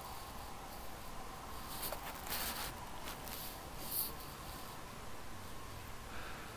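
Faint background hiss with a thin steady hum. A few soft, brief rustles or clicks come about two and four seconds in.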